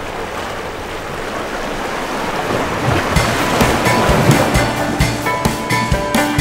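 A wash of sea waves and wind on open water for the first few seconds, then music with a regular drum beat and pitched notes comes in about halfway and takes over.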